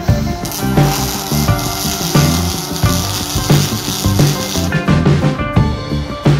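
Rock music with guitar plays throughout. From about half a second in until near five seconds, a steady hissing crackle runs over it: a MIG welding torch's arc laying a bead on a cracked exhaust pipe.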